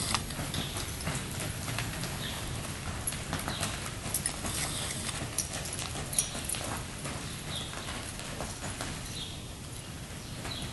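Horse hoofbeats on arena dirt footing, an irregular run of footfalls.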